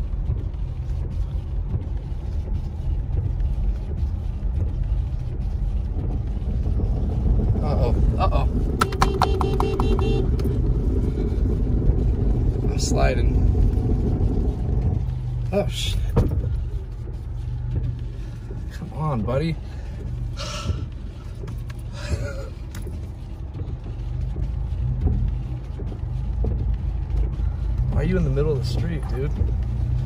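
Car cabin noise while driving on snow: steady engine and tyre rumble that swells for several seconds midway. About nine seconds in there is a rapid, evenly spaced run of clicks.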